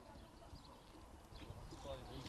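Very quiet outdoor background with faint distant voices and a few soft ticks.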